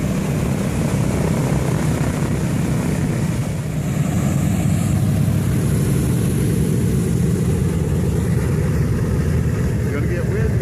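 Boeing B-17 Flying Fortress taxiing past, its four Wright R-1820 Cyclone nine-cylinder radial engines running at low taxi power with a loud, steady, low rumble.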